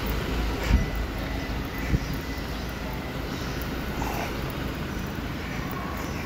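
Bus-terminal hall ambience: a steady low rumble of background noise, with two dull thumps about a second and two seconds in.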